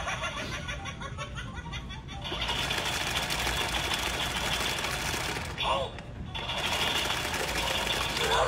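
Animated Halloween caged-skeleton prop running after its try-me button is pressed: a rapid mechanical rattle as its motor shakes the skeleton in the cage. There is a short break a little past halfway before the rattle resumes.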